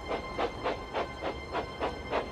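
Steam locomotive chuffing at a steady pace, about three to four puffs a second.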